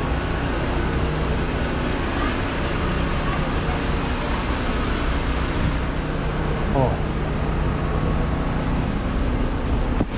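Steady low rumble of idling vehicle engines under a wash of street noise, with a voice calling out briefly about seven seconds in.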